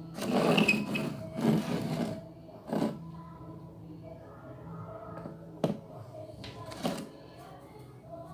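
Handling noise from a card-and-popsicle-stick craft stall: rustling and scraping as the printed card awning is lifted and moved in the first two seconds, then a few sharp taps and knocks as it is set back on its stick posts. Faint background music underneath.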